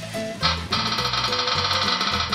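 Background music, with a fortune-wheel app on a phone spinning to draw the next box: a steady bright buzz sets in about half a second in and holds to the end.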